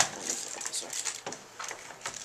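Handling noise of an airsoft M14 replica rifle on a wooden table: a sharp knock at the start, then a run of small irregular clicks and rubs as the stock and gun body are turned over and set down.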